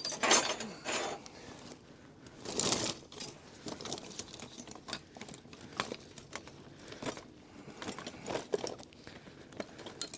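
Metal sockets and tools clinking and rattling as they are rummaged through in a tool bag. The loudest rattle comes near the start and again about two and a half seconds in, with scattered lighter clinks after.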